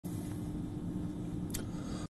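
Steady low background rumble with a faint steady hum, like distant traffic, and one brief faint click about a second and a half in.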